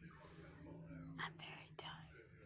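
A woman speaking very softly, close to a whisper, with two short hissing sounds, one just past the middle and one near the end. A faint steady low hum runs underneath.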